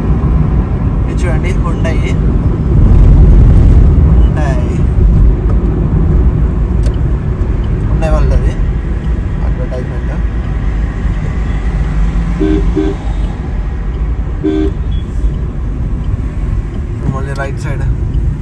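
Car cabin noise while driving: a steady low rumble of engine and tyres on the road. About two-thirds of the way through there are a few short horn beeps.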